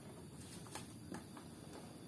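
Quiet room tone with a couple of faint short ticks; no engine or voice.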